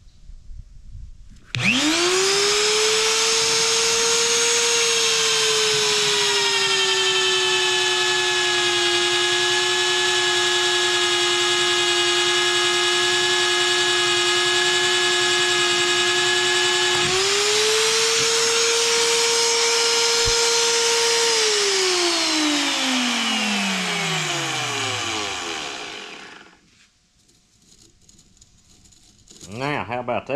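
VEVOR magnetic drill's electric motor starts with a rising whine about two seconds in and drills into steel. Its pitch sags and holds steady under the cutting load, steps back up past halfway as the load comes off, then winds down with a long falling whine and stops a few seconds before the end.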